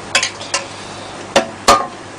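Four short clinks and knocks of a cup and kitchen utensils, the two near the end loudest, the last ringing briefly.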